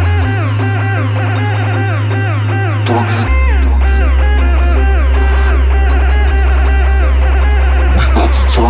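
Electronic dance music: a sustained deep bass note that drops in pitch about three seconds in, under fast synth notes that slide downward.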